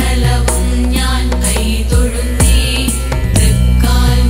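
Malayalam Hindu devotional song music: pitched melody over a steady low drone, with regular percussion strokes.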